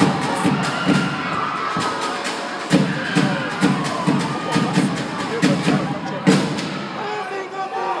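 Live Tongan dance music: a group of voices singing over a steady beat of about three strokes a second, with crowd noise and cheering. The beat breaks off briefly about two seconds in and again near the end.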